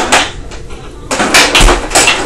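Rattling clatter from a small tabletop foosball game being played hard, in short noisy bursts, the longest about a second in.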